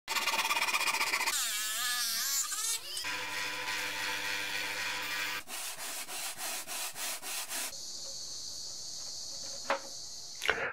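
A quick series of workshop tool sounds: a hand saw cutting a plywood sheet, then a wavering whine and a steady power-tool hum. After that come rhythmic strokes about three a second as a composite fin edge is worked over an abrasive strip, ending in a steady hiss.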